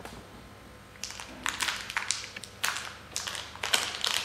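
Foil-and-plastic packets holding disposable microneedle cartridge tips crinkling as they are handled, in a run of short, sharp bursts starting about a second in.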